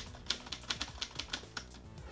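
Typewriter key strikes, about five a second in a quick uneven run, over a low music bed.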